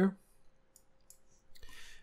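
A few faint, sharp clicks at a computer desk, then a short soft breath near the end.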